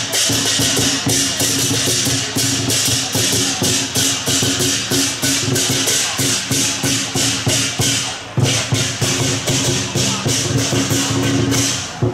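Lion-dance percussion band, a large drum and clashing hand cymbals, beating a fast, steady rhythm of about four strikes a second, with a brief break about eight seconds in.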